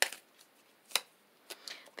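A deck of tarot cards being shuffled by hand: two sharp card snaps, one at the start and one about a second in, with a few fainter clicks near the end.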